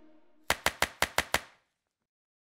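Six sharp clicks in quick, even succession, about six a second: an end-card animation sound effect, one click for each of six icons popping onto the screen.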